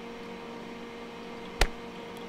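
One sharp click about one and a half seconds in, as a single 25-microsecond RF pulse is fired and registered by an AM-10 Acoustimeter RF meter, over a steady electrical hum.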